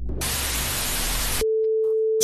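A produced TV-static sound effect: a burst of steady white-noise hiss for about a second that cuts off abruptly, followed by a single steady electronic beep tone.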